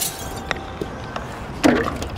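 Golf club striking a ball off a tee: one sharp crack at the very start, followed by a few faint ticks.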